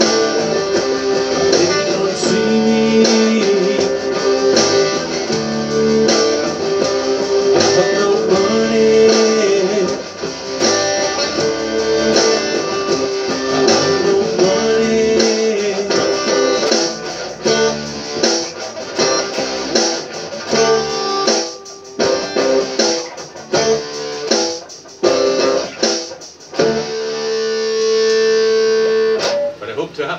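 Amplified electric guitar strumming sustained chords, turning to choppier stop-start chords about halfway through, then closing the song on one held chord that cuts off just before the end.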